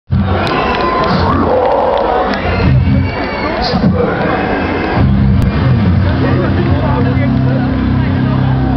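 Concert crowd cheering and shouting. About five seconds in, the metal band's amplified guitars and bass come in on a steady, held low chord.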